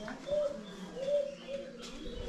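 A dove cooing: a run of short, low, pitched coos about half a second apart.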